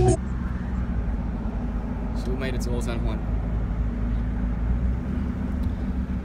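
Steady low rumble of a car's road and engine noise, heard from inside the cabin while driving.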